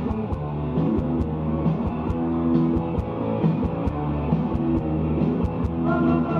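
Live rock band playing loudly: electric guitars and bass guitar over a steady drum beat, recorded from the audience in a concert hall.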